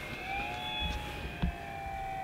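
The E-flite Commander RC plane's electric motor and propeller in flight, throttled back: a thin, steady whine that rises a little in pitch shortly after the start and then holds.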